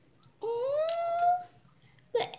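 A young girl's voice giving one rising "ooh", about a second long, pitched like her excited speech that follows. Two light clicks, from the small plastic kit pieces in her hands, come during it.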